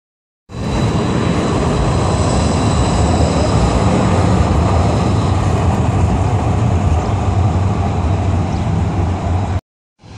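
Calgary Transit CTrain light rail train running along street track close by: a loud, steady rumble with a faint high whine that fades out about halfway through. The sound cuts off suddenly just before the end.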